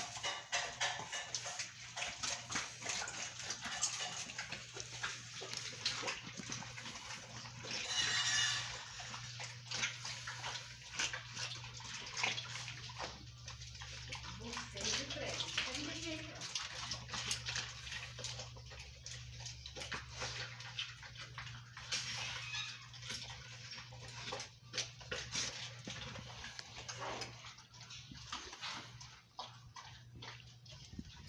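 German Shepherds chewing raw chicken, crunching the bones, with many irregular crunches and clicks throughout.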